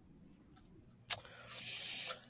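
Near silence, then a single mouth click about a second in, followed by a faint breath drawn in that rises in level near the end.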